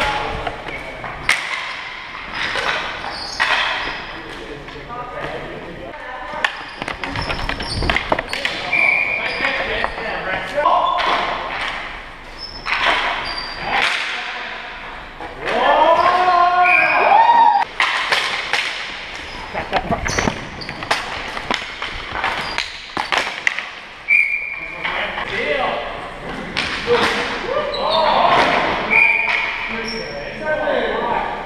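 Indoor hockey game on a gymnasium floor: hockey sticks knocking against the ball and the floor again and again, with short high squeaks and players' shouts, all echoing in the hall.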